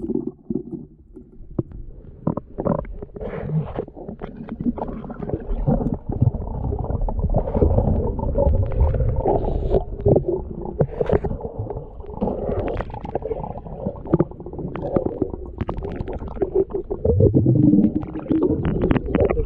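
Muffled underwater rumbling and water movement, heard through a camera's waterproof housing as a diver swims and handles gear, with many small knocks and clicks. A single sharp click right at the start is the loudest sound.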